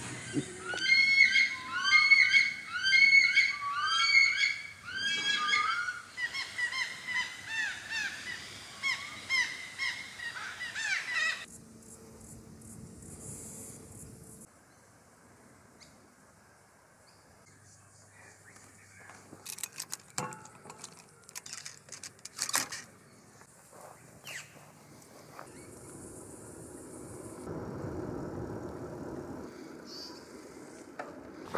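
Birds calling loudly over one another, a rapid run of repeated rising-and-falling notes that stops abruptly after about eleven seconds. A quiet outdoor background follows, with a few scattered clicks.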